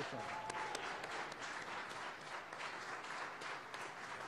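Steady, dense applause from the mission control team, likely marking the first-stage booster's landing and orbit insertion.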